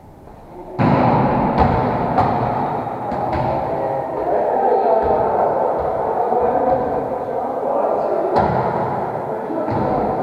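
Sharp thuds of a volleyball being struck, echoing in a gym hall over a steady din, with a few hits close together in the first couple of seconds and another near the end.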